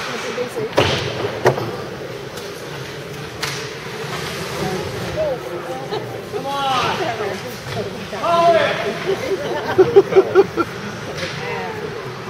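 Ice hockey rink sound: spectators' voices calling out over the rink's steady background, with a few sharp knocks from play on the ice in the first few seconds. About ten seconds in there is a run of short, loud shouts.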